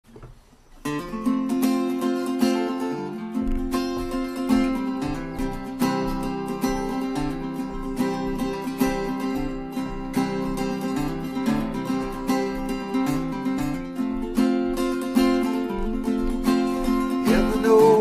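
Small-bodied acoustic guitar played solo as a song's instrumental intro, its notes ringing steadily from about a second in.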